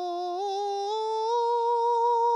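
A man singing a sustained open 'heo' vowel, stepping up in pitch about half a second in and again about a second in, then holding the higher note steadily. It is a vocal exercise carrying the mid range upward toward falsetto using the feeling of breath placed high.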